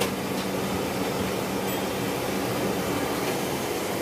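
Steady roaring hum of a gas stove burner alight under a wok, with kitchen fans running. Nothing starts or stops.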